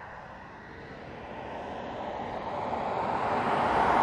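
Audi Q8 TFSI e plug-in hybrid SUV approaching on an open road, its noise a steady rush that grows louder throughout as it nears.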